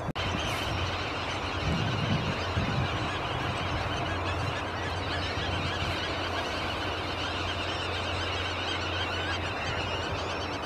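A dense background chorus of many birds calling at once, the calls overlapping without a break, over a steady low hum.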